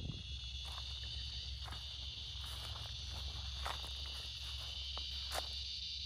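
A steady high insect chorus, with scattered footsteps scuffing through grass and dry leaves, over a low steady rumble.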